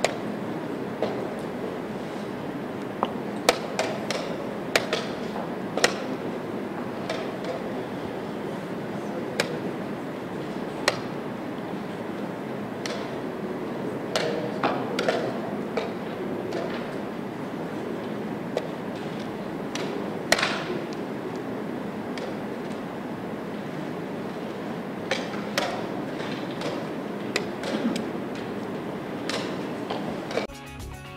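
Sharp irregular clicks and knocks of wooden chess pieces being set down and a chess clock being pressed during a fast blitz game, over a steady murmur of room noise.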